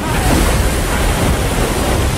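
Seawater washing and spraying over a surfaced submarine's bridge, with wind: a loud rush of water noise that sets in suddenly.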